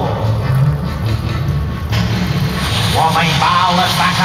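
Show soundtrack music with a low, repeating bass pattern; a voice comes in over it about three seconds in.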